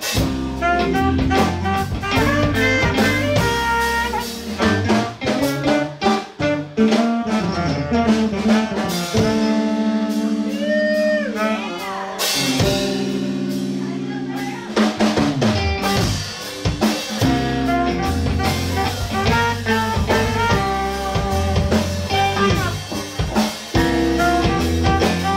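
A live band playing with a drum kit, electric guitars, bass and saxophone, the drums busy throughout. Near the middle the drum hits thin out for a few seconds while held notes ring, one of them bending up and back down.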